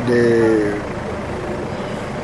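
A man's drawn-out hesitation sound, held on one slightly falling pitch for under a second, then a steady outdoor background hum.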